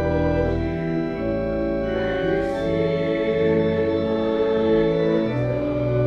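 Church organ playing a hymn in sustained chords that change every second or so.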